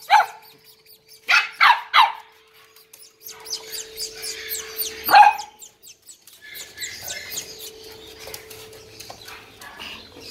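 Corgi puppies barking: one short bark at the start, three quick high barks about a second and a half in, and one loud bark about five seconds in.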